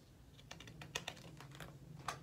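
Faint scattered clicks and light rustling of a hardcover picture book's page being handled and turned, over a steady low hum.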